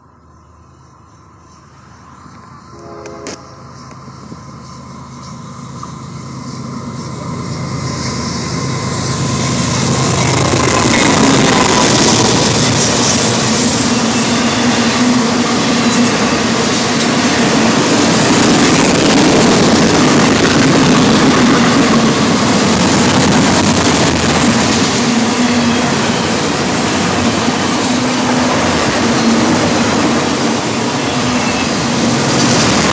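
A long freight train of autorack cars rolling past. The rumble and clatter of wheels on rail grows steadily louder over about the first ten seconds, then holds steady and loud.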